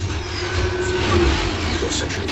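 Film soundtrack playing from a television: a deep, steady rumble with a held low tone through the middle and a faint falling whistle near the start, the sound effects under a space scene.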